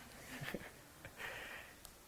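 Quiet room tone with a short breathy hiss a little past halfway through, a person breathing out, and a tiny click near the end.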